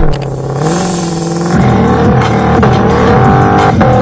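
Shelby GT500's V8 engine revving up, its pitch climbing, dropping back about one and a half seconds in, then climbing again, under a music track.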